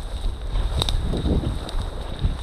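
Wind noise on the microphone and the brushing of tall dry grass while walking through it, with one sharp click a little under a second in.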